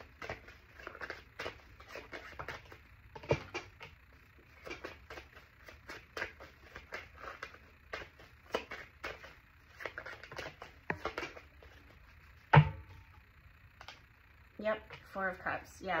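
A tarot deck being shuffled by hand: a run of short, crisp clicks and flicks as the cards slide over one another, with one louder knock about three-quarters of the way through.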